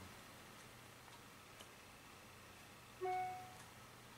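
A single short electronic alert chime from an iPod touch, played through the iHome iH6 dock's speaker about three seconds in, fading over about half a second. Before it there is only a faint low hum.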